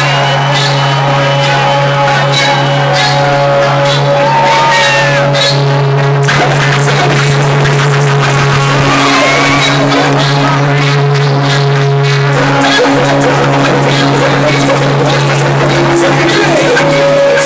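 Live rock concert intro music played loud through a hall PA: sustained low droning notes with held tones above them that shift pitch every few seconds, and a crowd shouting and cheering over it.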